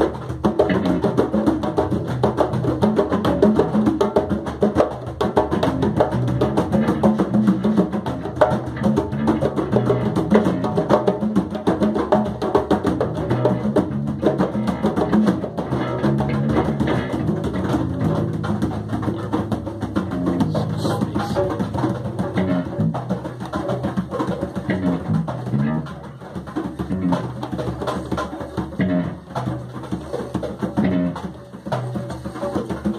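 Live jam of congas played by hand in a quick, busy rhythm, with an electric guitar playing along underneath. The playing eases off briefly about 26 seconds in.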